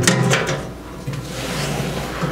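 Metal clunks and rattles of a steel drop box being handled: its retrieval door has just been shut and the key turned in the lock, then the box is moved on its stand. The sharpest knocks come in the first half second, followed by lighter rubbing and rattling.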